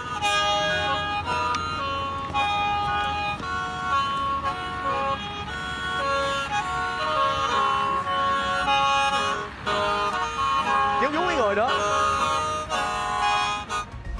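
A Hmong khèn, a bamboo free-reed mouth organ, playing a tune in held notes, several pipes sounding together as chords.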